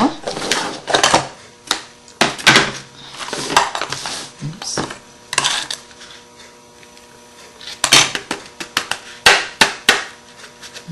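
Paper-craft tools and materials handled on a tabletop: clusters of sharp taps and clicks, a few seconds apart, with quieter rustling between, as glitter is added over glue.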